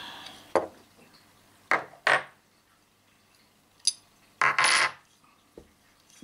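Clicks and clatter of a CO2 BB pistol being handled: single sharp clicks about half a second, a second and a half, two seconds and four seconds in, then a longer scraping rattle near four and a half seconds.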